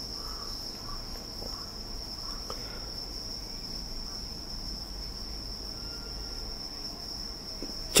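Insects, such as crickets, trilling in one steady high pitch without a break, over a faint low background rumble.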